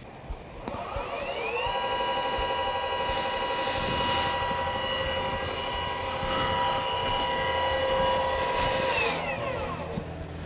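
Celestron Origin smart telescope's mount motors whining as it slews the tube during its start-up calibration. The whine rises in pitch about a second in, holds steady, then winds down and stops near the end.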